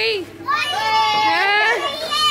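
Children's excited voices, a long drawn-out happy shout or cheer starting about half a second in.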